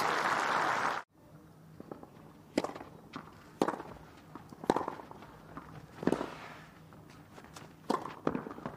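Crowd applause for about a second, cut off abruptly; then a tennis rally on a clay court, with the ball struck by rackets about once a second and faint footsteps on the clay between the hits.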